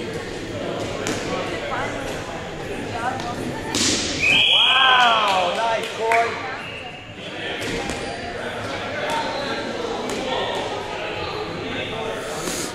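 Echoing gym-hall chatter with dodgeballs thudding and bouncing on the wooden floor. About four seconds in, a referee's whistle sounds for under a second, overlapped by a loud shout, and a second short whistle follows a moment later.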